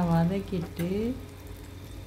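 A woman speaks for about the first second; after that, sliced shallots frying in oil in a pan give a faint sizzle over a steady low hum.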